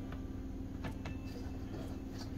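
A few faint, light clicks of a plastic laptop bottom cover being set and shifted into place on the chassis, over a steady low hum.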